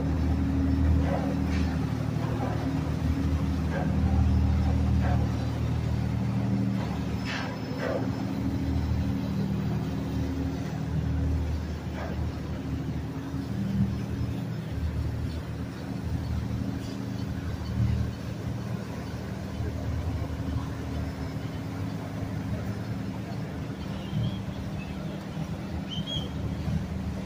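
Motor yacht's inboard engines running at low cruising speed close by: a steady low engine drone with a hum of several tones.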